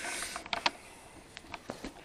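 Handling noise from a hand-held camera being swung around: a scatter of light clicks and taps over a faint hiss.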